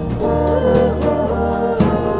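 Live band music: keyboard and low bass under a held lead melody that slides between notes.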